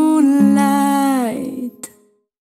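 A woman's voice holds the song's final long note over a low sustained bass note. About a second and a half in, the note bends down and the music fades out and ends, with a short click just before the end.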